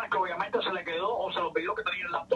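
Speech only: a person talking in Spanish without a pause.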